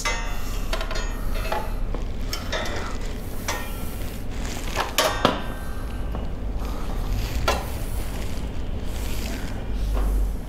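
Scattered small metallic clicks and knocks of a part being tried by hand for fit at the rear seat mount of a motorcycle, over a steady low hum.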